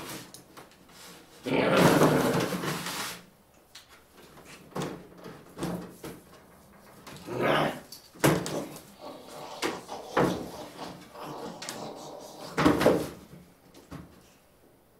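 A pet capuchin monkey scuffling and scrambling on a wooden playhouse roof during rough play with a person: irregular bursts of rubbing, knocking and handling sounds on wood, the longest and loudest about two seconds in.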